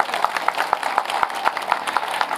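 A street audience clapping: many separate hand claps at an irregular pace, as scattered applause in a pause of a speech.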